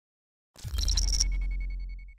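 Electronic logo-reveal sound effect: after half a second of silence, a sudden low boom with high, ringing electronic pings over it, fading out over about a second and a half.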